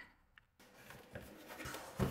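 Faint rubbing and handling noise, with a light click about a second in, after a near-silent start.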